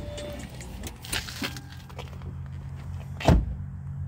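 Vehicle engine idling with a steady low hum, with a few light clicks and a single sharp thump a little over three seconds in.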